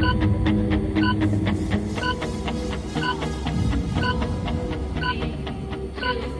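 Background music: a steady ticking beat about four times a second, with a short bell-like note about once a second over held low tones.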